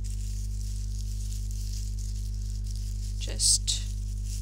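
Steady low electrical hum with a faint hiss. Near the end there is one brief, louder rustle, paper or tape being handled.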